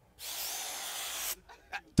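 Steady hiss of a deep breath drawn in through a clear plastic face mask, lasting about a second, followed by a few short faint sounds.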